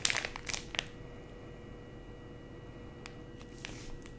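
Clear plastic bag crinkling as it is handled and opened during the first second, then quiet room tone with a few faint crackles near the end.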